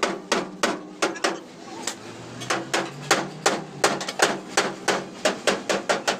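Hand hammer beating the steel door pillar of a Hyundai Shehzore truck cab during dent repair: rapid repeated metal-on-metal strikes with short ringing, about three or four a second, with a brief pause about two seconds in.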